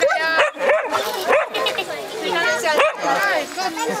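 Hungarian Vizslas whining and yipping in a run of short, high cries that slide in pitch.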